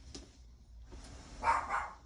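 A dog barking, two barks in quick succession about one and a half seconds in.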